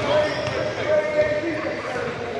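A basketball bouncing on a hardwood gym floor as a player dribbles at the free-throw line, with people's voices chattering in the gym.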